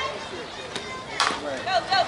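A bat striking a fastpitch softball: one sharp crack about a second in. Voices start shouting right after it.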